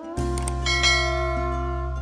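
Background music overlaid with a subscribe-button sound effect: a click just after the start, then a bright bell chime that peaks just under a second in.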